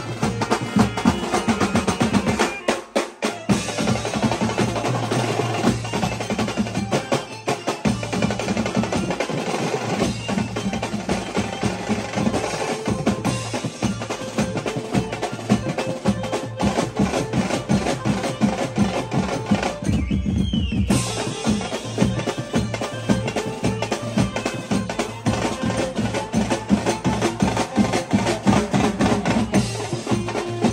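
Live Indian beats band playing a fast, steady dance rhythm on drums and cymbals with keyboard, the percussion loudest. The sound goes briefly muffled about two-thirds of the way through.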